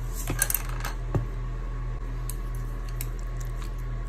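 Wooden spatula clicking and knocking against a glass bowl while tossing sliced pork in sauce: a quick cluster of clicks, then one louder knock about a second in.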